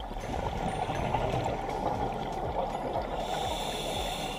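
Underwater water noise picked up by a submerged camera: a steady rush of water, dense and low, with fine crackling through it.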